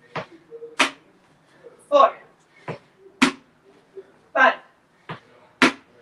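Two handheld food cans tapped together, giving sharp clinks in pairs about half a second apart, with the second clink of each pair the louder. A pair comes every two and a half seconds or so, once per exercise rep.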